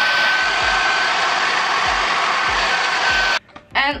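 Handheld hair dryer running steadily, a rush of air with a steady whine in it, blown over freshly sprayed wig lace at the hairline to dry it flat. It cuts off suddenly about three and a half seconds in.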